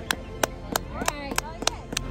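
Hand claps, evenly spaced at about three a second, with a voice calling out faintly about a second in.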